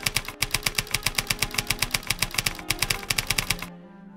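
Typewriter keystroke sound effect: a fast, even run of clacking keys, about eight a second, that stops abruptly near the end.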